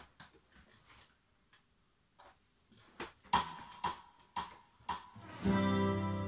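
Acoustic guitar: quiet handling at first, then a few sharp plucked notes about half a second apart, and a strummed chord ringing out near the end.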